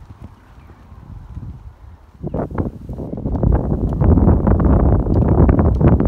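A horse's hoofbeats: quiet at first, then from about two seconds in a quick run of hoof strikes with a low rumble, growing loud.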